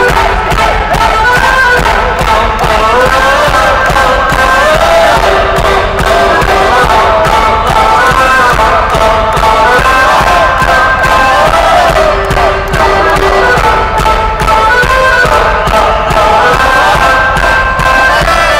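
Live rock band playing a loud Celtic-flavoured song, with a wavering fiddle-like lead melody over a steady drumbeat.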